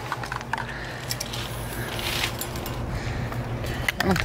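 Hand sanding of a metal truck grille, a few irregular scratchy strokes over a steady low hum.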